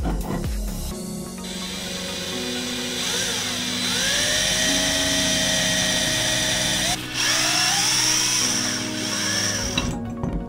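Handheld electric drill boring into the end of a wooden dowel. The motor's whine rises as it spins up, runs steady, breaks off briefly about seven seconds in, starts again and stops just before the end.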